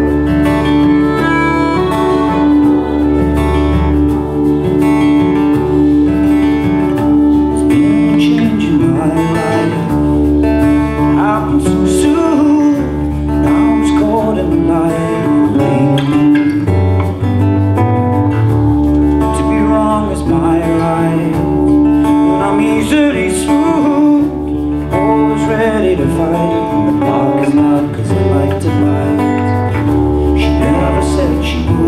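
A live folk band plays an instrumental passage: strummed acoustic guitars, button accordion and fiddle over drums and a bass line, with a long held note running under the tune.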